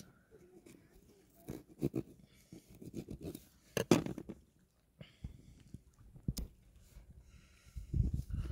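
A serrated kitchen knife cutting around a plum and knocking on a plastic tray: a few sharp clicks and taps, with faint handling noise between.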